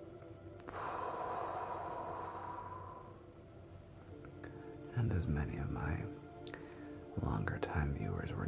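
A long, deep breath out, starting about a second in and lasting about two seconds, over a soft, steady synth pad. Low, murmured voice sounds follow near the middle and again near the end.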